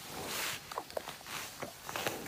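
Water buffalo feeding on a pile of sweet potato leaves and vines: a rustle of leaves as it pulls at them, then several short crunching snaps as it tears and chews.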